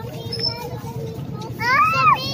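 Street-market chatter and bustle, then near the end a child's high-pitched call that rises and then falls in pitch, loudest of all.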